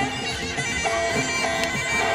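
Sarama, the traditional Muay Thai fight music: a reedy Thai oboe (pi) playing a held, wavering melody that shifts note a few times, with other instruments beneath.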